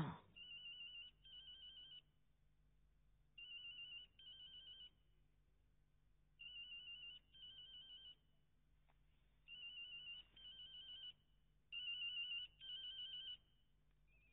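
Electronic telephone ringer, a warbling trill in double rings, sounding five times in a row.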